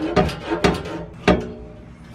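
Truck exhaust pipe wrenched back and forth by hand against its welded-on hanger: a quick run of metal knocks and clanks, the last and loudest about a second and a quarter in. The hanger is being worked loose so the exhaust can be pulled out.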